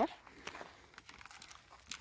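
Faint, irregular crackling and rustling of dry, burnt scrub and stony ground underfoot, with scattered small clicks.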